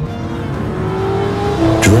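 Genesis G70 sports sedan's engine running at speed on a track, a steady drone over background music.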